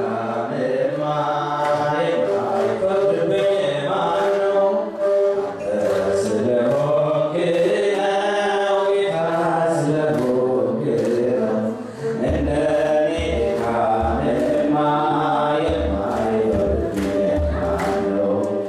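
Ethiopian Orthodox hymn chanted by a group of voices together. A deep hand drum joins with irregular beats about two-thirds of the way through.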